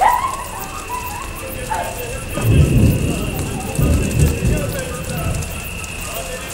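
Outdoor evening ambience: a steady high-pitched drone, a few wavering calls in the middle range, and two low rumbles near the middle.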